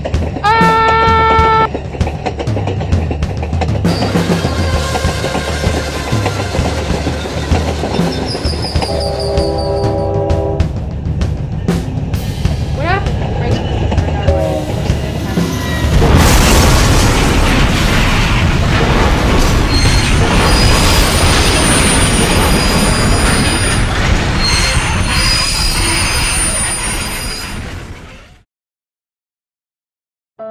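Recorded train sounds played through computer speakers: horn blasts about a second in and again around nine seconds, over steady running-train noise. From about sixteen seconds a loud, steady roar takes over and fades out at the end.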